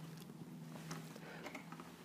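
Quiet room tone: a faint steady low hum with a few faint, light ticks.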